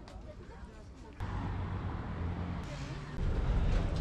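Outdoor street ambience: a steady low traffic rumble with indistinct background voices. It gets louder about a second in.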